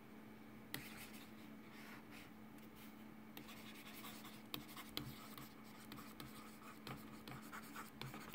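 A stylus nib scratching across the textured surface of a graphics tablet in short drawing strokes, faint, with light ticks where the pen touches down.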